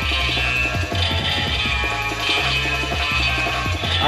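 A 2000s Nickelodeon TV show's theme song playing: steady music over a bass line whose notes change about once a second.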